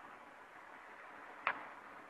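Faint steady hiss with one sharp click about one and a half seconds in.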